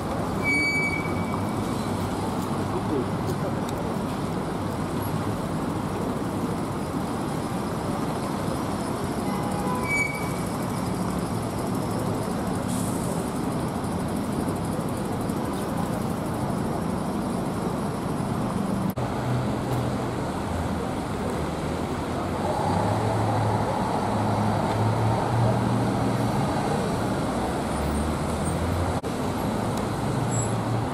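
Steady city traffic noise: vehicle engines running and tyres on a wet road. In the last several seconds a heavier engine grows louder as a bus passes close by.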